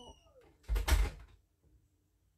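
A short, loud thump or knock about a second in, lasting about half a second.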